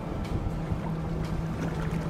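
Cartoon sound effect of an amphibious car running on water: a steady engine hum under rushing, splashing water.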